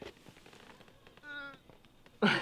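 A single short, pitched vocal sound about a second in, lasting under half a second, over a quiet background.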